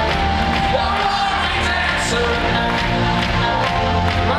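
Live rock band playing a synth-driven song in an arena, heard from among the audience: steady bass and sustained keyboard chords, with some crowd noise under it.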